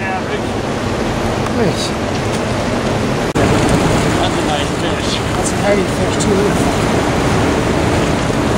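Steady rushing noise of wind on the microphone and moving river water, with faint voices and a brief dropout just over three seconds in.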